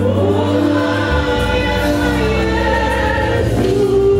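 Gospel choir singing with live band accompaniment, the voices holding long, sliding notes over a steady bass line.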